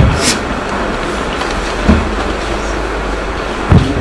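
Steady rumbling, rushing background noise with three soft low thumps, near the start, about two seconds in and near the end.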